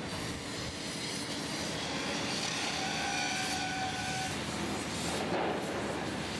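Steady industrial machinery noise of a shipyard dry dock, with a faint whine held for about two seconds in the middle.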